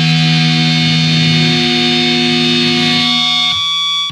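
Distorted electric guitar left ringing in a held, noisy wash at the end of a hardcore punk song, with no drums or strumming. The low notes drop away about three and a half seconds in, leaving only high ringing tones that cut off suddenly at the end.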